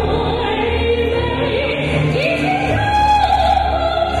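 A female vocalist singing into a handheld microphone over a backing accompaniment, her voice carrying a wide vibrato and climbing to a higher held note about three seconds in.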